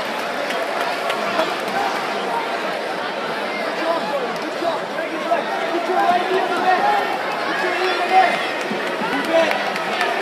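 Crowd chatter in a large sports hall: many overlapping voices at a fairly steady level, with no single speaker standing out.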